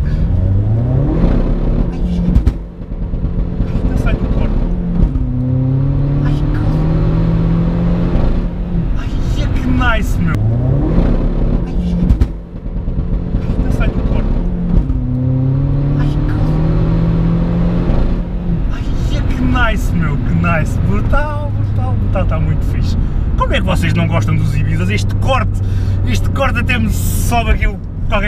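Heavily modified SEAT Ibiza TDI turbodiesel, heard from inside the cabin under hard acceleration. The engine note rises through first gear, dips briefly at the shift into second and rises again, twice over, then settles to a steadier lower drone.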